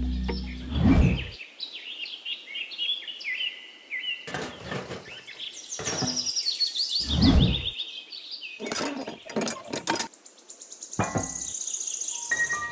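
Birds chirping in quick runs of short high calls, with several dull knocks and scrapes from a plastic tray being handled and pressed into a sand pit; the loudest knocks come about a second in and at about seven seconds.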